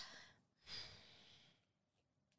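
A woman's faint breathing: the tail of one breath out at the start, then a second, weaker breath about half a second in.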